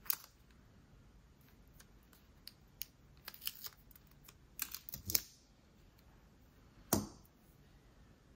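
Light, scattered clicks and taps of a plastic nail stamper being handled against a metal stamping plate, with a small run of clicks about five seconds in and one sharper click about seven seconds in.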